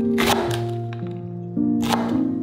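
Chef's knife slicing through a cabbage wedge and striking a wooden cutting board, two crisp cuts, one just after the start and one near the end. Background music with sustained notes plays throughout.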